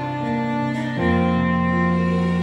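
Soprano saxophone playing held notes of a slow ballad melody over a backing track with strings; about a second in, the accompaniment moves to a new chord with a strong low bass note and the music gets louder.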